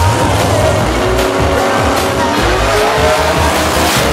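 Drag-racing car engine accelerating hard, its pitch rising over a few seconds, with background music playing underneath.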